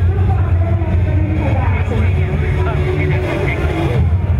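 Loud carnival street-parade din: many voices and the parade's amplified sound over a steady low hum.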